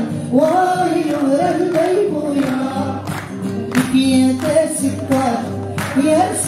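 A man singing a Riffian song live to his own acoustic guitar accompaniment, the voice gliding and wavering over steady guitar notes.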